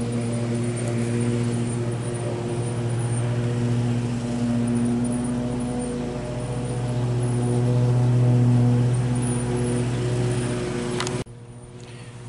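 A steady low mechanical hum holding one pitch, swelling louder about eight seconds in and dropping abruptly to a quieter level near the end.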